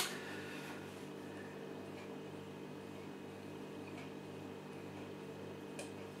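Quiet room tone: a low, steady hum of several constant pitches, with a short click at the start and a few faint small sounds as beer is sipped from a glass.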